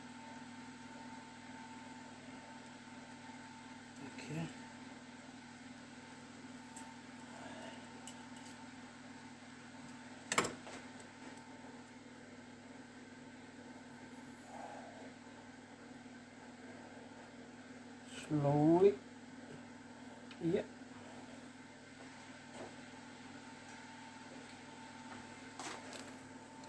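Steady low workshop hum with a fainter higher tone above it. One sharp click comes about ten seconds in, a short mumbled voice sound just past two-thirds of the way through, and a few small knocks from hands working on the metal gearbox casing.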